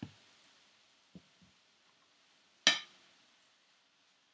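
Perforated metal spatula knocking against a wok while vegetables are stir-fried: a few soft taps, then one sharp clink with a short ring about two-thirds of the way in, over a faint steady hiss.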